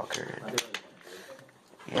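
Low, indistinct talking with two short clicks about half a second in.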